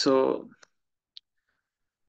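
Two quiet computer mouse clicks about half a second apart, advancing a presentation to its next slide, after a brief spoken word at the start.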